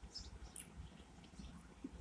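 Near silence: quiet room tone inside a parked car, with a few faint, brief high-pitched sounds.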